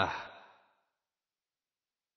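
A man's reading voice trails off at the end of a phrase in the first half second, then dead silence: a pause in the recitation.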